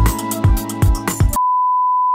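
Music with a steady beat that cuts off abruptly about one and a half seconds in, replaced by a loud, steady single-pitch test tone, the reference beep that accompanies TV colour bars.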